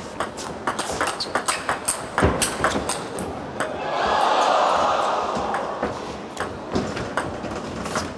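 A fast table tennis rally: the plastic ball gives sharp clicks off the rubber bats and the table, several a second, at an uneven rhythm. In the middle, about four seconds in, the crowd's noise swells and then dies back as the rally goes on.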